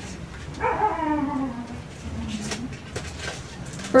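A drawn-out whining call that falls in pitch, starting about half a second in and fading out after about two seconds. A few faint clicks follow.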